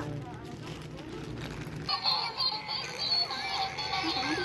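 Tinny electronic melody from a battery-powered Mid-Autumn toy lantern, coming in about two seconds in after a quieter, muddier stretch.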